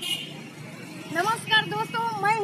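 Street background of motor traffic noise, with a woman's voice starting to speak about a second in.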